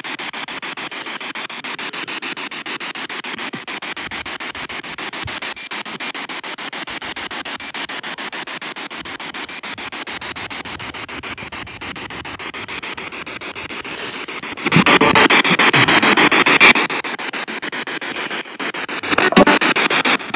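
P-SB7 spirit box sweeping through radio stations: steady choppy static with a fast, even stutter. It swells into a louder stretch about three-quarters of the way through and again just at the end.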